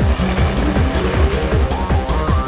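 Goa trance music: a driving kick-drum beat with ticking hi-hats coming in at the start, while a synth tone rises steadily in pitch.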